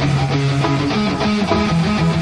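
Electric guitar played live through the stage PA: a riff of held notes that change every half second or so.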